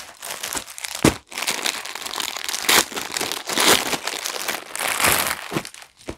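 Clear plastic packaging crinkling and rustling as packed suit sets are handled and pulled open, with a sharp snap about a second in.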